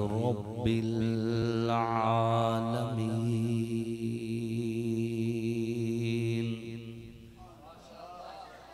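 A man's voice reciting the Quran in a melodic chant, holding one long note at a steady pitch for about six seconds before it fades away near the end.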